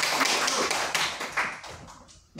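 A small audience applauding, many quick hand claps that thin out and fade away in the second half.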